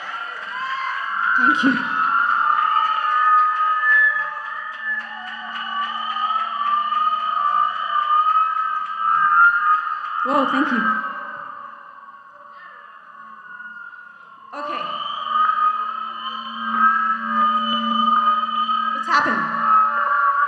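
Electric guitar held on sustained notes through effects, a wavering drone over a low steady hum. It fades down about twelve seconds in and comes back suddenly about two seconds later.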